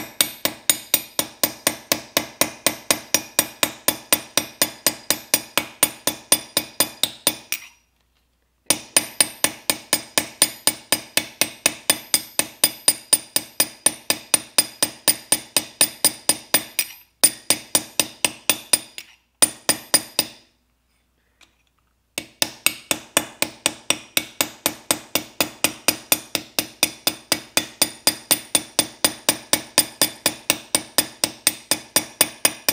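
Hammer striking a steel punch held on a brass knife guard resting on an anvil: a steady run of about three ringing blows a second, with short breaks about eight seconds in and around twenty seconds in. Each blow drives a dimple into the brass to texture the guard's whole surface.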